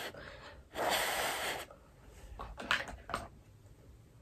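A person blowing on a glued false eyelash so the lash glue dries: a soft breath at the start, then one long, louder blow lasting about a second, beginning just under a second in.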